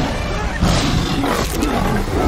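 Lion roaring loudly as it lunges in attack.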